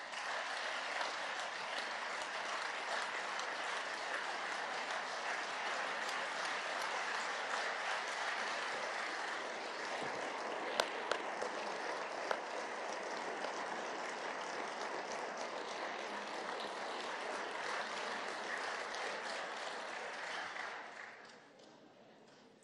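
Sustained applause from a chamber full of members of parliament, a steady clatter of many hands that dies away over the last two seconds or so.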